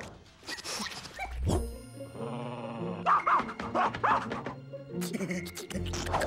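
Cartoon background music with a short low thump about one and a half seconds in, followed by animal-like vocal noises from an animated character.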